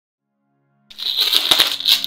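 A clear plastic bag crinkling and rustling as a puppy paws and bites at it, starting suddenly about a second in.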